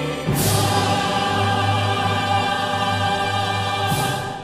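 Choir and orchestra performing together: a full chord struck sharply about a third of a second in and held, with another sharp stroke near the end.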